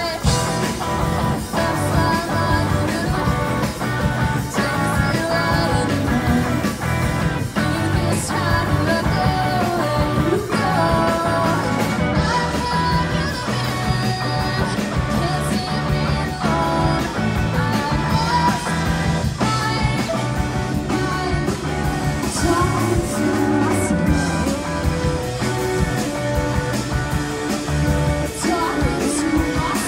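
Live rock band playing amplified through PA speakers: a woman singing into a microphone over electric guitar and a drum kit.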